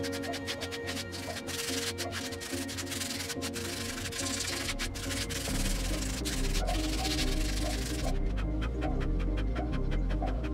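Sheet of sandpaper rubbed by hand over the painted surface of a bonsai pot in quick back-and-forth strokes, with background music. The sanding stops about eight seconds in, and deeper bass enters the music in the second half.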